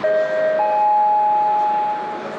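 High-speed train's horn sounding: a steady held tone, with a second, higher tone joining about half a second in, both held to a sudden stop.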